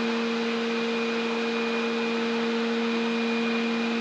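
Steady machinery hum: a low drone with a faint high whine over an even hiss, unchanging throughout.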